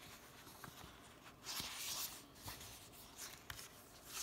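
Paper sticker sheets rustling and sliding against each other as they are handled. Faint, a little louder about halfway through.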